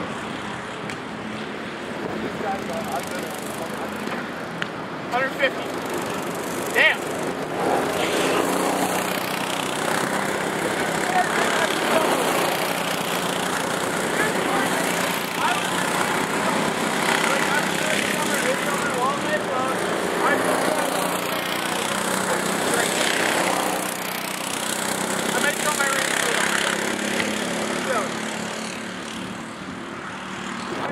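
Small go-kart engines buzzing steadily as several karts lap the track, one driving close past, with indistinct voices talking in the background.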